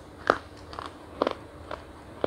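Close-up crunching as a piece of chocolate is bitten and chewed: a few short, sharp crunches, the loudest about a quarter second in and a quick cluster just past the middle.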